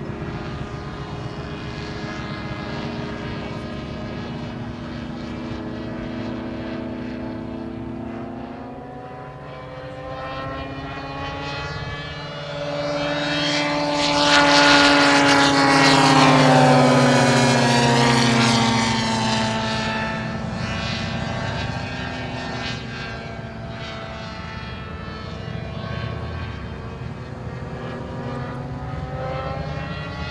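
The twin Zenoah ZG 45 two-stroke petrol engines of a giant-scale RC Dornier Do 335 model, with one propeller in the nose and one in the tail, drone steadily in flight. About halfway through, a close pass makes the engines grow loud, and their pitch falls as the model goes by; the sound then eases back to a more distant drone.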